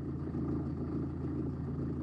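A steady low hum with a soft rumble and no sudden sounds.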